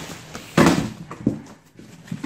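Cardboard box flaps and packing tape being pulled open, with one loud tearing scrape about half a second in and a shorter one a little later.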